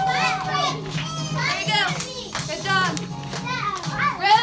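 A roomful of young children talking and calling out over one another, with music playing underneath.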